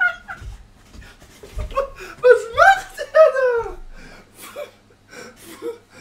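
A man laughing uncontrollably, in loud wavering bursts that are loudest about two to three seconds in, then trail off into quieter snickers.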